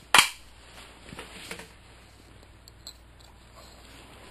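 A single sharp knock just after the start, then quiet room tone with a few faint small clicks.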